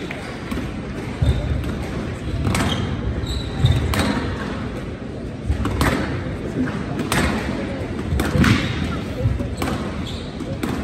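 Squash rally on a glass court: the ball cracks off racquets and walls about every one to one and a half seconds, with the players' footsteps between shots.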